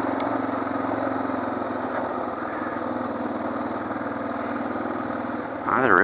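Suzuki DR650's single-cylinder engine running steadily as the bike rolls along a gravel road. Its note eases off a little about halfway through. A rider's voice comes in near the end.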